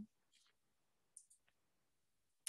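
Near silence, with a couple of faint clicks about a second in.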